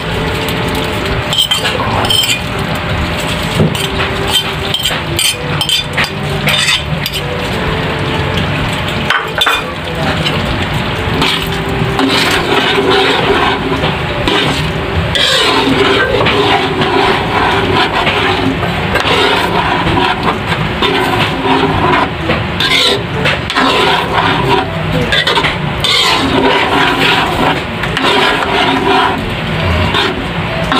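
Metal spoon stirring and scraping thick spaghetti sauce in an aluminium wok, with scattered light clinks of the spoon against the pan.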